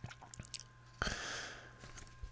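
Faint mouth clicks close to a microphone, then a short breath about a second in.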